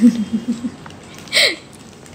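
A woman's short chuckle, a few quick breathy pulses, then about a second later a single brief vocal sound falling in pitch.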